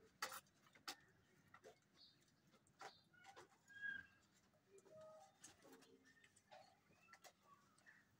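Near silence, with scattered faint clicks and a few faint bird calls.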